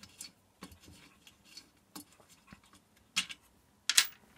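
Hand screwdriver with a socket bit undoing a bolt from a diesel heater's burner casting: scattered light metallic clicks and ticks, with two louder clicks about three seconds in and near the end.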